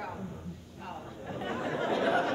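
Indistinct chatter of an audience in a hall, many voices at once, growing louder toward the end.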